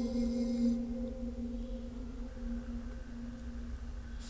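A single held low note from a vocal chant, fading. Its upper overtones drop away under a second in, and the note dies out near the end over a low rumble.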